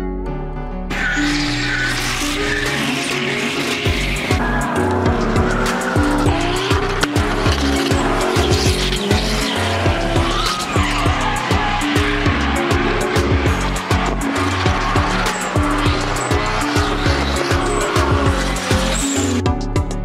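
A car being drifted, its engine revving and its tyres squealing, over background music with a steady bass line. The car sounds start about a second in and stop near the end, leaving only the music.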